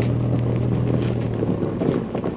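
Vehicle engine running steadily with a low hum, heard from inside the vehicle, under a steady rush of road and wind noise; the hum drops away about a second and a half in.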